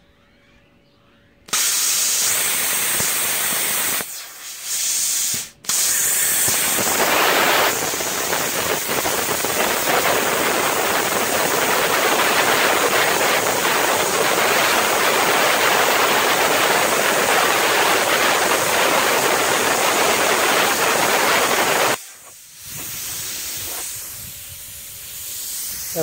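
Powermax 45 plasma cutter cutting half-inch steel plate: a loud, steady hiss that starts about a second and a half in, breaks off briefly around four seconds, restarts, and runs until about four seconds before the end. A quieter air hiss follows it.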